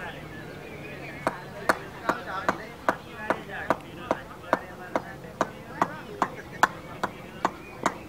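A steady run of sharp knocks, about two and a half a second, starting just over a second in.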